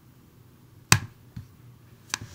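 Computer mouse or trackpad clicking: one sharp click about a second in, then a fainter click about half a second later.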